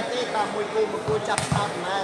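Volleyball impacts: a sharp smack of the ball about one and a half seconds in, with a couple of lighter thuds around it, over faint background voices.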